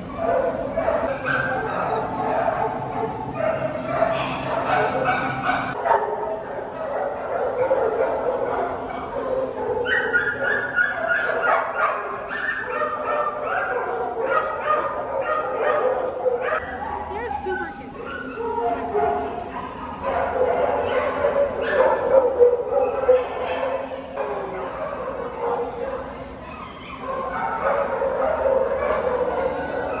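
Many kennelled dogs barking and yipping at once in a shelter kennel room, a continuous chorus with background voices.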